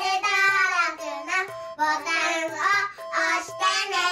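Young girls singing over cheerful backing music, with steady instrument notes under a voice line that moves up and down.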